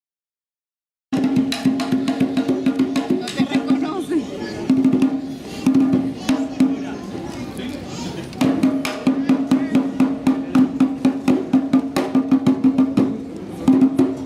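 Candombe drumming on three barrel-shaped tambores, each played with one stick and one bare hand: fast, sharp stick clicks over a pitched drum beat. It starts suddenly about a second in, drops back for a couple of seconds in the middle, then comes in loud again.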